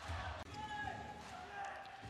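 Basketball arena ambience: a low murmur of the crowd in the hall, with faint ball bounces on the court.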